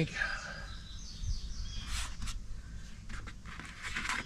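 A small bird chirps briefly in the background, followed by a couple of light sharp clicks about two seconds in.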